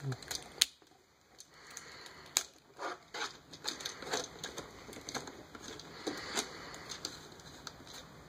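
Plastic parts of an Excellent Toys Ptolemy super-deformed Optimus Prime figure clicking and rubbing as an arm joint is slotted, turned to lock and pulled out, with a scattering of small sharp clicks.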